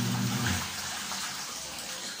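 Soapy water sloshing and splashing in a plastic basin as clothes are scrubbed and swished by hand. A low steady hum cuts off about half a second in.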